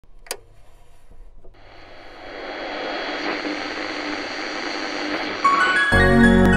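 A click, then a rushing wash of noise that swells steadily louder over about four seconds and gives way to keyboard music entering near the end.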